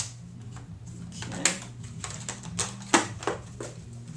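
Irregular clicks and light knocks from a Polaroid Countdown 70 folding camera being handled, the sharpest about three seconds in, over a steady low hum.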